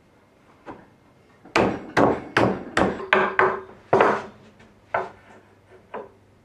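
Mallet blows knocking a glued stretcher's tenon home into the mortise of a round wooden leg: about eight sharp wooden knocks in quick, uneven succession, then one more about a second later.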